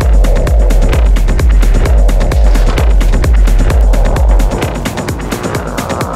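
Hard techno with a steady pounding four-on-the-floor kick drum and fast ticking hi-hats. About four and a half seconds in the kick drops out briefly, leaving a rising noise sweep.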